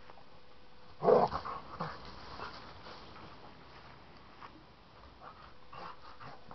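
A young American bulldog–Staffordshire bull terrier cross dog vocalizing: one loud, short outburst about a second in, followed by a few quieter sounds over the next second.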